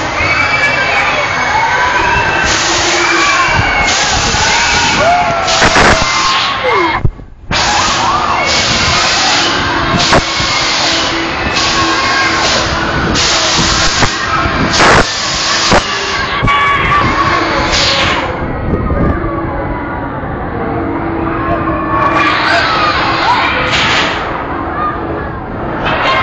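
Riders on a spinning amusement ride shouting and whooping, with gliding, rising and falling cries, over a dense rush of noise that comes and goes in bursts about a second long. The noise thins out for a few seconds after about eighteen seconds and returns near the end.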